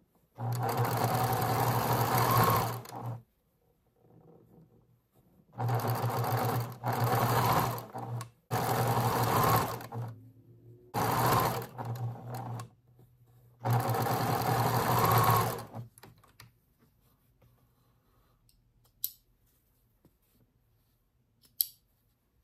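Electric domestic sewing machine stitching seams in pieced patchwork, running in five separate spells of a couple of seconds each with short stops between them. After the last run, only faint clicks and fabric handling.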